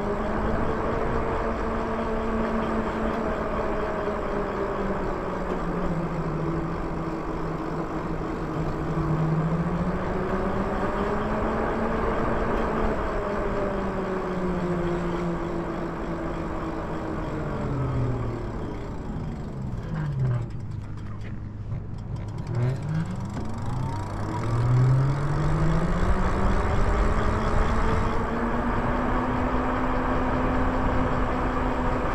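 Ebike's electric motor whining under road and wind noise, its pitch rising and falling with speed. About two-thirds of the way through the whine sinks low as the bike slows almost to a stop, and the wind noise fades with it; then the pitch climbs again as the bike pulls away.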